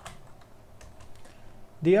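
A few scattered keystrokes on a computer keyboard, faint, as text is entered in an editor.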